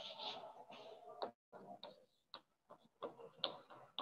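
Faint sounds at a chalkboard: a duster rubbing across the board, then a series of separate sharp taps and short scratches as chalk starts writing on it.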